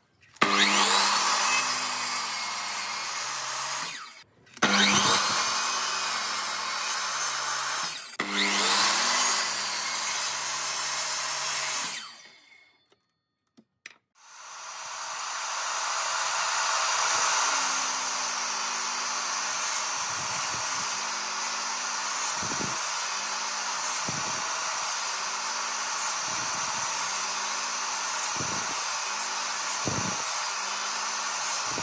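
Miter saw running and cutting wood: three cuts of about four seconds each, a short break, then the saw running steadily with brief dips every second or two as a row of closely spaced kerfs is cut into a pine board.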